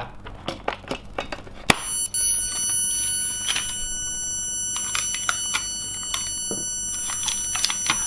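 A click, then a steady high-pitched electronic tone from the repaired LCD device as it is switched on for a test, with light knocks of plastic casing being handled over it.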